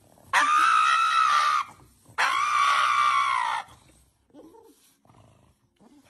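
A pug screaming: two long, high-pitched screams of about a second and a half each, close together. Only faint short sounds follow.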